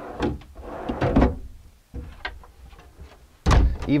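Solid-wood cabinet doors and a pull-out drawer being handled: scattered clicks and knocks, with one loud thump about three and a half seconds in.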